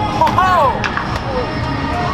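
Voices calling out in a ballpark's stands, loudest early on, with two sharp knocks about a third of a second apart a little under a second in.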